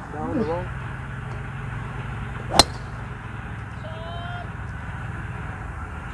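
A single sharp crack of a driver clubface striking a golf ball off the tee, about two and a half seconds in, over a steady low hum.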